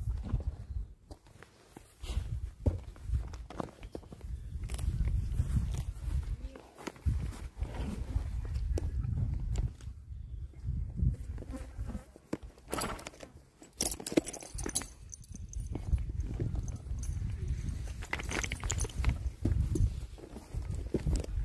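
Footsteps walking across grass, with uneven low rumbling handling noise on the camera microphone. A few sharper rustles and clicks come about two-thirds of the way through and again near the end.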